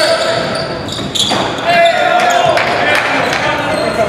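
Indoor basketball game: a basketball bouncing on a hardwood gym floor, with players' voices and short shoe squeaks, echoing in a large hall.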